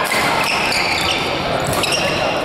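Badminton rally: sharp racket strikes on the shuttlecock and short high shoe squeaks on the court mat, over the steady din of play on other courts.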